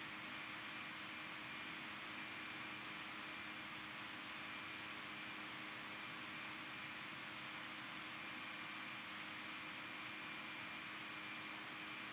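Faint steady hiss with a few thin steady hum tones under it: background room tone on the recording microphone, with no events.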